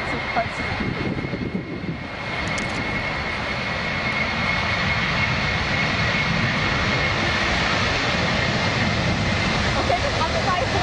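Boeing 747's four jet engines at takeoff thrust as the airliner rolls down the runway: a steady rush of engine noise with a high whine held through it, growing louder about three seconds in.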